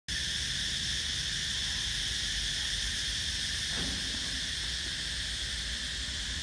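A steady, high-pitched drone from a chorus of insects, in several unbroken shrill bands, over a low rumble.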